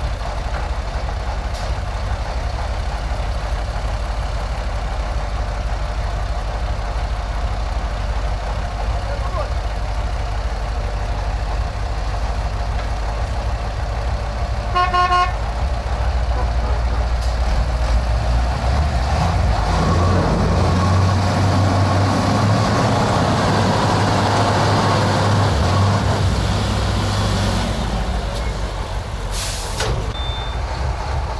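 Heavy diesel truck engines working under load in a tug-of-war between a KrAZ army truck and a KAMAZ dump truck. There is a steady deep rumble, a short horn toot about halfway through, then the engine is revved hard for about ten seconds as it pulls, easing off near the end.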